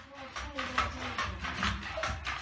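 Indistinct low speech, with short clicks repeating every few tenths of a second.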